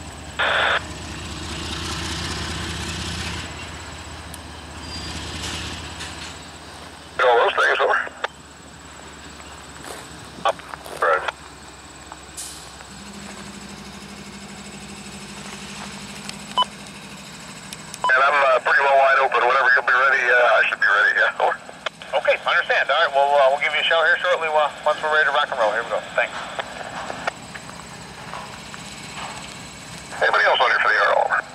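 Unintelligible voice chatter squeezed into a narrow band, typical of a railroad scanner radio: short bursts at about seven and ten seconds in, then a long stretch of talk from about eighteen seconds that runs most of ten seconds. A low rumble of rail equipment fills the first few seconds.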